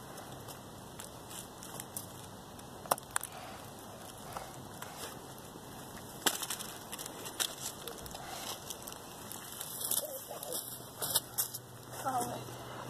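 Faint scattered clicks and crackles of a woodchip mulch bed and its mushrooms being handled and cut, over a steady background hiss, with a small cluster of crackles near the end.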